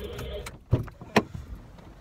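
Low hum inside a car cabin, with two sharp clicks about half a second apart, the second one the louder.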